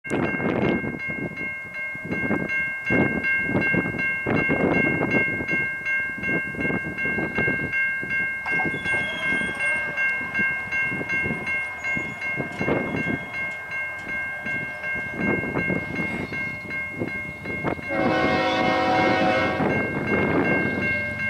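Level-crossing warning bell ringing steadily while wind gusts buffet the microphone. About two seconds before the end, the approaching CN ES44AC diesel locomotive's air horn sounds.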